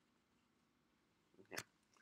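Near silence: room tone, broken about one and a half seconds in by a single brief, sharp noise.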